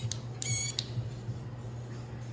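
Short squeaks and creaks, with a few light clicks, as gloved hands handle a Shimano Di2 shift/brake lever, over a steady low hum.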